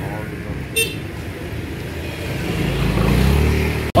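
Street traffic noise with a motor vehicle's engine rumble swelling in the last second or so, then breaking off abruptly. A brief high-pitched squeak sounds about a second in.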